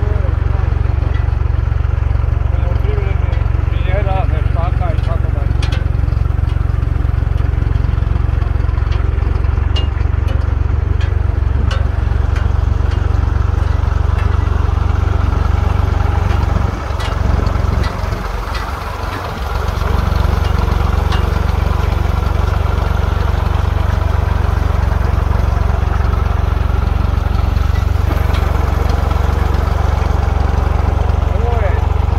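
A vehicle engine running steadily with a low rumble, which dips and breaks up for a couple of seconds in the middle.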